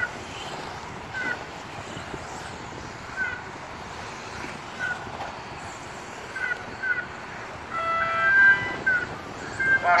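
RC racing buggies running on the track: a steady noise of motors and tyres, with short high chirps every second or two. About two seconds before the end a brief electronic chord of several steady tones sounds, timed with the race clock running out.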